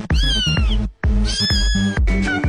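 Two cat meows laid over a music track with a steady beat: the first about a second long and falling in pitch, the second starting just past the middle and holding.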